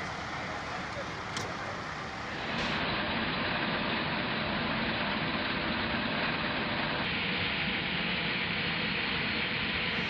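Steady machinery noise from the flight line, with a faint click about a second and a half in. About two and a half seconds in it changes abruptly to a louder steady noise.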